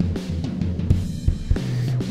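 A drum-and-bass music mix playing through the Airwindows Baxandall2 EQ plugin: drum hits over sustained low bass notes, with a little more clarity and guts to the sound.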